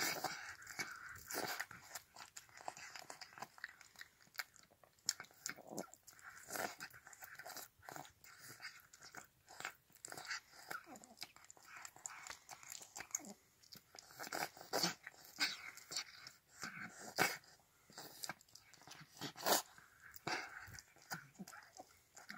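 An old cat noisily eating wet canned food from a stainless steel bowl: irregular wet smacking and chewing, with now and then a louder smack.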